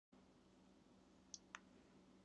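Near silence with a faint steady low hum, broken by two quick faint computer mouse clicks about a second and a half in.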